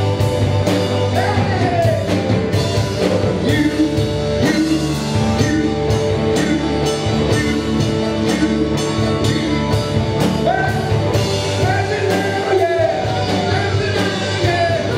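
Live rock band playing, with vocals sung over electric guitars and a drum kit keeping a steady beat.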